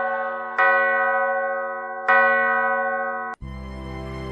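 A bell struck twice, about a second and a half apart, each stroke ringing clearly and fading away. The ringing cuts off suddenly near the end as music with a low drone comes in.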